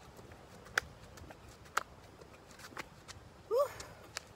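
Feet landing during jumping jacks: a sharp slap about once a second. A brief voice-like sound comes near the end.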